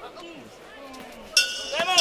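Boxing ring bell struck about 1.4 seconds in and ringing on, signalling the end of the round.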